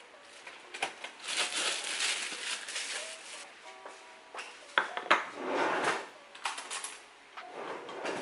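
A ceramic plate and a butter knife clinking and scraping in several short bouts, with sharp clicks between them, over soft background music.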